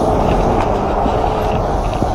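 Loud, steady rumble of street traffic, with vehicles passing close by.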